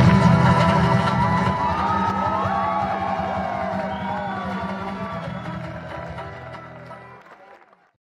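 Banjo and guitars of a live folk band finishing a tune, followed by the audience cheering and whooping. It all fades out steadily to silence near the end.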